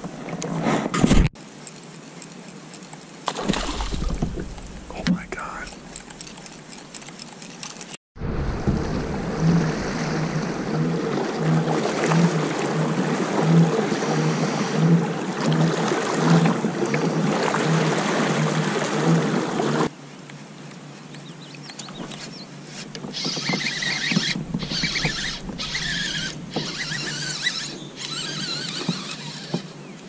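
About twelve seconds of background music with an even beat, starting and stopping abruptly, set between stretches of a pedal-drive kayak moving on a lake with water noise around the hull.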